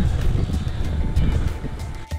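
Wind buffeting the microphone of a camera on a moving bicycle, a choppy low rumble, with faint music underneath.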